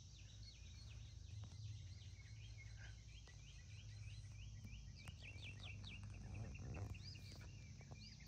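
Faint outdoor ambience of birds chirping: many short, repeated high calls over a low steady rumble.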